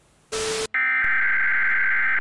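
A brief burst of TV static, then a steady, buzzing electronic alert tone of several pitches at once: an Emergency Broadcast System-style attention signal announcing a program interruption.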